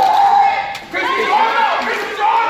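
Raised voices calling out in a large, echoing gym hall, with a short lull a little before the middle.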